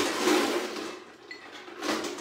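Ice cubes clattering as they are put into a Boston shaker, a dense burst that is loudest in the first second and then tails off.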